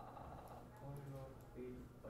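Faint, indistinct speech over a steady low hum.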